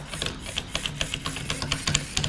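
Small educational robot platform's geared drive motors running, a faint hum under a rapid clicking of about seven clicks a second.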